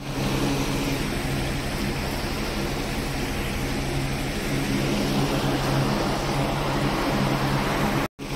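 Steady machine hum: a constant low drone with a rumble underneath, from a running engine or motor.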